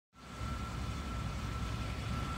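A vehicle engine idling steadily, a low rumble with a thin, steady high tone above it.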